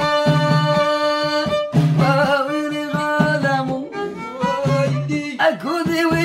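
Violin held upright on the knee and bowed, holding one long note for about a second and a half, then moving into a winding melody, over a steady beat on a hand frame drum with jingles.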